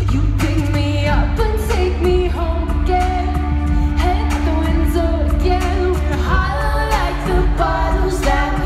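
Live pop concert music: a woman singing over a sustained synth bass and a steady electronic beat, as heard from the arena stands.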